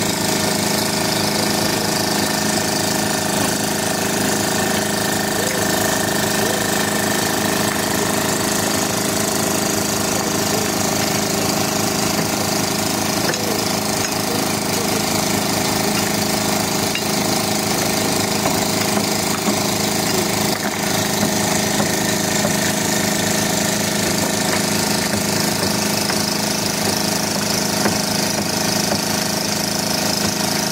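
An engine running steadily at one constant speed, with a fast, even beat.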